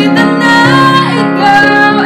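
A young woman singing a Tagalog ballad, accompanying herself on the piano, her voice gliding between held notes over sustained piano chords.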